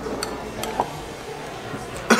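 Metal spoons clinking and scraping against glass sundae bowls: a few light, separate clicks.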